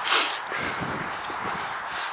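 A person's short, sharp sniff through the nose, followed by a steady soft hiss.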